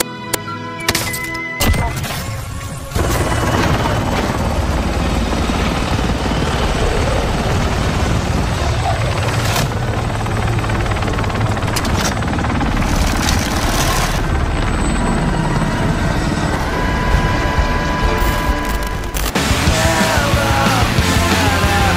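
Soft music with a few sharp clicks, then from about three seconds in a loud, steady din of rumble and noise with occasional bangs, in the manner of video-game battle audio with helicopter and gunfire.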